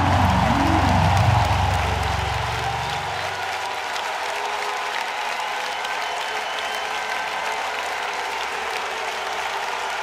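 The live band's last bass-heavy notes ring out and stop about three seconds in, leaving a concert crowd applauding steadily.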